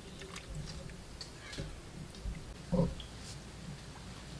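A person taking a sip from a cup: one short low mouth sound near three seconds in, over faint scattered clicks and chirps.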